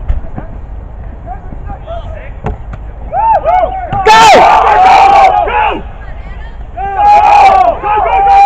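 Several people shouting and cheering at once, overlapping wordless yells from a sideline during a football play. They come in two loud bursts, the first about three seconds in and lasting a few seconds, the second near the end.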